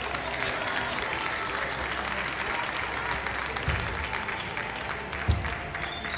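Applause-like clapping and hall noise in a table tennis arena over soft background music, with two dull low thumps near the end.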